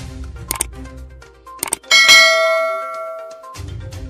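Subscribe-button animation sound effects: a couple of quick clicks, then a single bright bell ding about two seconds in that rings out for over a second, over low background music.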